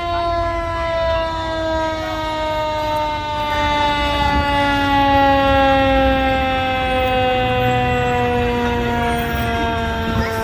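Fire engine siren winding down in one long, slowly falling wail, with a low rumble beneath it. The steady coasting drop in pitch is typical of a mechanical siren spinning down.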